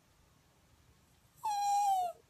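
Near silence, then about a second and a half in a single short meow-like cry that falls slightly in pitch, answering the joke that the dog is a cat.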